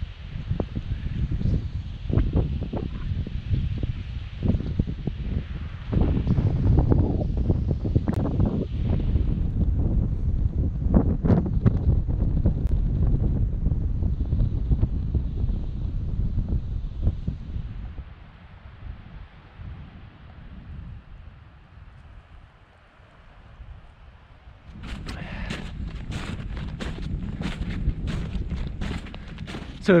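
Wind buffeting the microphone in loud gusts, easing off after about 18 seconds. Near the end, a quick run of footsteps.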